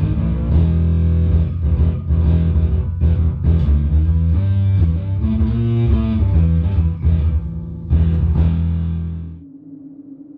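Five-string Warwick electric bass guitar playing a riff of low plucked notes, which stops abruptly about half a second before the end, leaving a low steady hum.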